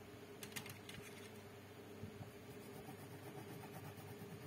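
A quick run of light clicks from small hard objects being handled, about half a second to a second in, over a faint steady hum.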